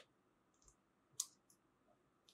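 A few faint, sharp plastic clicks from a jumper wire's connector being fitted onto the pin header of a relay module, with the clearest click about a second in.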